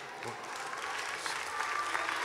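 Congregation applauding, the clapping swelling steadily over the two seconds.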